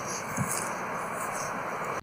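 Steady road-traffic and wind noise from an outdoor field recording, played back after a noise-reduction pass that has left a lot of ambient noise. It cuts off abruptly at the end when playback stops.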